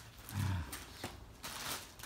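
A short low grunt about half a second in, followed by a few soft footsteps and scuffs on paving stones.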